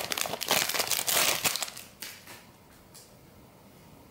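Foil wrapper of a trading-card pack crinkling as it is pulled open and peeled away, for about two seconds before it goes quiet.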